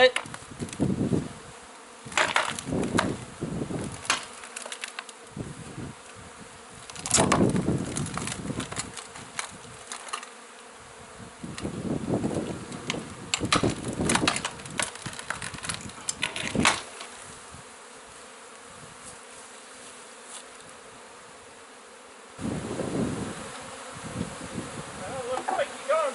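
Honeybees from a large, exposed colony buzzing steadily in the air around the opened wall. Several bunches of sharp knocks and wooden creaks come and go as boards are pried off the wall.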